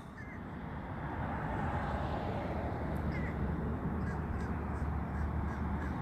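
Steady outdoor background noise with a low hum, and a few faint bird calls.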